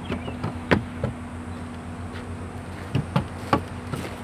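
A horse's hooves knocking on the wooden deck of a small trail bridge: a handful of irregular hollow clomps, the loudest just under a second in, over a steady low hum.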